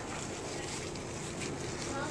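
Steady rustling and crackling of dry wood chips as hands scoop and sift them in an aluminium pan.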